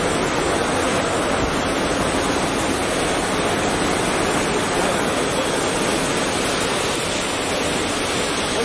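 Steady, even rushing background noise with no distinct sounds standing out: the busy open-air ambience of an airport forecourt.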